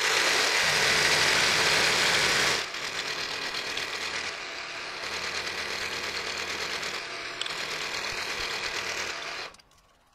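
Vertical milling machine's end mill cutting along a metal block, a steady machining sound that is loudest for the first two and a half seconds, then runs on quieter and cuts off suddenly near the end.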